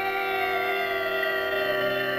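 Title music: a sustained chord of several steady held tones, with a lower note joining near the end.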